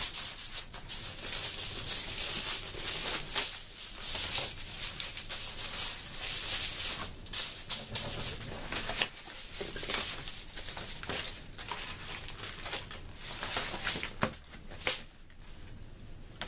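Construction paper rustling and rubbing as hands slide it and press it down onto cardboard. The scrapes and crinkles come and go unevenly.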